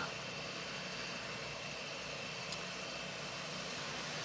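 Steady, faint background hum and hiss with no distinct event, like a distant engine or traffic noise carried on the night air.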